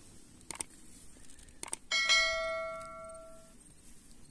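Subscribe-button animation sound effect: a few short clicks, then a bell chime about halfway through that rings out and fades over about a second and a half.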